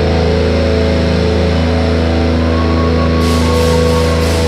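Metalcore band playing live through a festival PA: distorted electric guitars and bass hold one steady, ringing chord over a strong low note. A high hiss joins about three seconds in.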